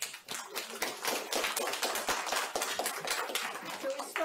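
Audience applause: many hands clapping steadily.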